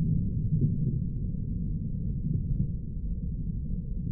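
Slowed-down range audio under slow-motion footage: a deep, drawn-out rumble with nothing above the low range, slowly fading.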